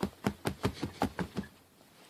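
A quick run of about a dozen light knocks, several a second, from something hard being hit or tapped by hand. The knocks stop about a second and a half in.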